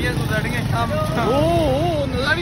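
Men's voices over the steady running and road noise of the vehicle they are riding, with one voice gliding up and down in pitch about halfway through.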